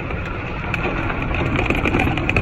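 A moving golf cart: a steady rumble of wind buffeting the microphone along with tyre and drive noise, growing slightly louder.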